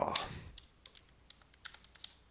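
Computer keyboard keys tapped one at a time as digits are typed into a spreadsheet, a run of separate keystrokes in the second half.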